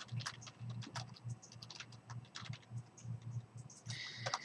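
Typing on a computer keyboard: an irregular run of key clicks, several a second.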